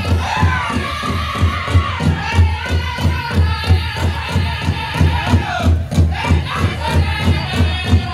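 Powwow drum group singing a fancy shawl contest song: high-pitched voices in unison over a big drum struck in a fast, steady beat, about three beats a second. The singing drops out briefly about six seconds in while the drum carries on.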